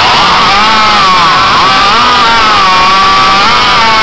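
Two racing hot saws, custom chainsaws with large two-stroke engines, running flat out as they cut through logs. A loud continuous high-revving whine with pitch that wavers and dips briefly a couple of times.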